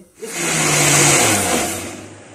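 Electric countertop blender running loud, churning cultured cream in ice-cold water to make butter. It starts about a quarter second in, its motor hum drops in pitch partway through, and it falls away just before the end.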